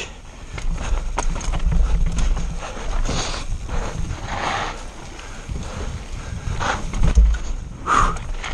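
Mountain bike riding fast downhill over wooden slatted ramps and dirt: tyres clattering and rattling across the wooden slats, the bike rattling, with a steady low rumble of wind on the camera's microphone.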